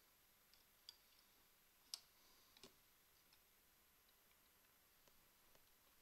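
Faint clicks of a printed circuit board being handled and fitted into the holder of a current balance: three or four small clicks in the first three seconds, otherwise near silence.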